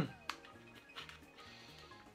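Quiet background music with low, changing bass notes, and a couple of faint clicks from plastic candy packaging being handled, one just after the start and one about a second in.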